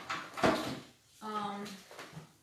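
A single sharp knock, an object meeting a hard surface, about half a second in. It is followed near the middle by a short hummed syllable from a woman's voice.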